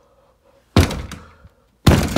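Two heavy thuds about a second apart, each sudden and loud, then fading quickly.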